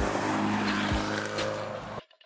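Abarth 595's turbocharged four-cylinder engine and exhaust running under power as the car drives along the road, loud and steady in pitch. It cuts off abruptly at the end.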